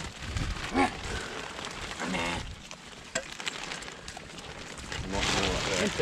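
Brief voice calls to the working terriers, with the rustle and scuffle of the dogs moving through straw muck and plastic sheeting in the quieter stretch between the calls.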